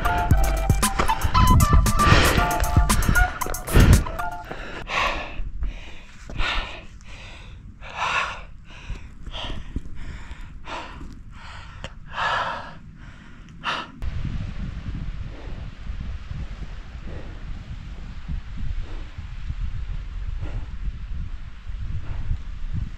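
Background music for the first few seconds, then a climber's heavy, rapid breathing under exertion, about one to two breaths a second, for some ten seconds. After that, low wind rumble on the microphone.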